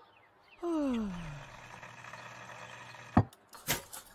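Music cuts off abruptly. A moment later a pitched electronic tone slides steeply downward, like a power-down sound effect, and settles into a faint low hum that fades away. Two sharp knocks come about half a second apart near the end.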